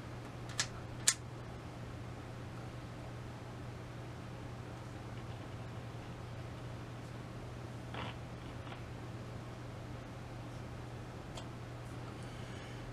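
NRI Model 34 signal tracer's speaker giving out a faint steady hiss and low hum of AM-band static, with some scratchiness in it: the tracer is working but has found no station yet. Two sharp clicks about half a second apart near the start, and a softer one about eight seconds in, as its front-panel knobs are turned.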